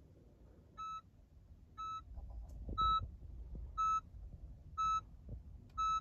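Honda HR-V's interior warning chime giving six short beeps, about one a second, the first two quieter, while the start/stop button is held with no smart key detected.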